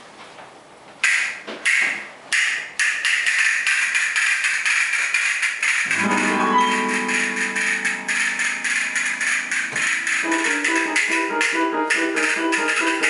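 Castanets struck three times, then played in a fast continuous roll of clicks. About halfway through, an electronic keyboard comes in with a held chord, and near the end it plays a short repeating figure under the castanets.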